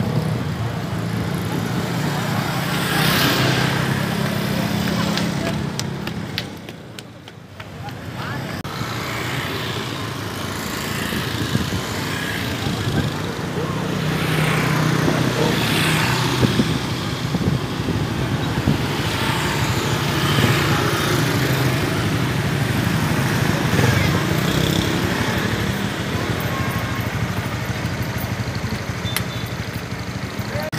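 Motorcycle and vehicle engines running and passing close by in street traffic, mixed with the voices of a crowd. The traffic noise dips briefly about a quarter of the way in.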